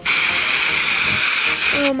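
Aerosol can of green temporary hair-colour spray giving one steady, continuous hiss lasting nearly two seconds as it sprays a ponytail.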